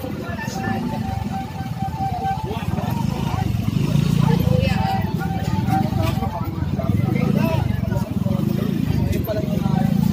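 Street sound of voices talking over a motorcycle engine running close by at low speed, with a thin high tone that comes and goes in the background.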